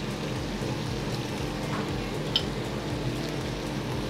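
A pan of fish and vegetables sizzling steadily on a gas range, over the steady hum of a kitchen extraction hood, with one faint light tick a little past halfway.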